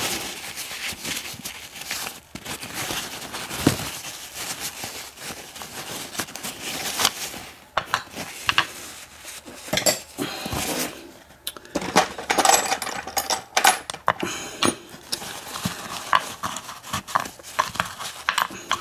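Paper towel rubbing and crinkling as a brass padlock and its key are wiped clean, with many small metallic clicks and clinks of the lock being handled. The sound is irregular throughout and gets busier past the middle.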